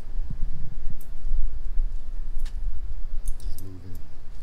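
Low, continuous rumble of wind and handling on a handheld camera's microphone, with a few light metallic jingles and clicks scattered through it.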